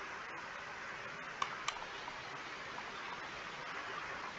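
Two quick computer mouse clicks, about a third of a second apart and about a second and a half in, over a steady faint hiss of microphone background noise.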